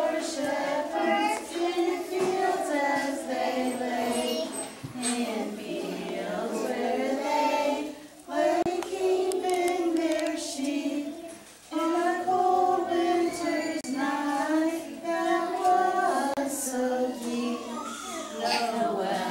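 A group of young children singing a song together in phrases, with two short breaks between phrases near the middle.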